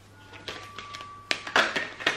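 A deck of oracle cards being handled and shuffled in the hands: soft clicks, a sharp tap, then a brief rustle of cards sliding near the end.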